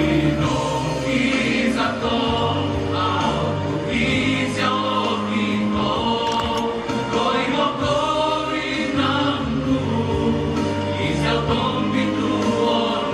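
Male choir singing through stage microphones, with low bass notes held underneath the melody.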